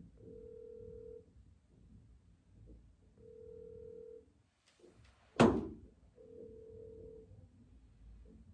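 Telephone ringback tone heard through a phone's speaker: a steady beep about a second long, repeating every three seconds, three times, as a call rings unanswered. A little past the middle comes a single sharp thump, the loudest sound.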